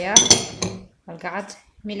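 Glassware clinking: two or three sharp chinks in the first half second as a small glass dish of salt is handled beside a glass mixing bowl, with a voice talking over and after it.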